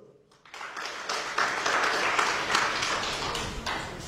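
An audience clapping. It starts about half a second in, swells and tails off near the end.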